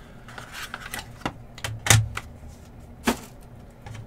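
Light clicks and taps of card packaging being handled on a tabletop, with a sharper knock about two seconds in and another about three seconds in.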